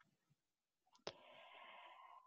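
Near silence, broken by a single faint click about a second in, followed by a faint steady hiss for about a second.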